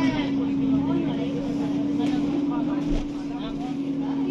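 Steady low hum of an ADL Enviro400 double-decker bus in motion, heard from inside the passenger saloon, with faint passenger voices in the background.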